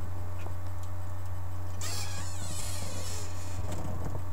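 A steady low hum throughout, with a rustling, scraping noise from about two seconds in that lasts just under two seconds.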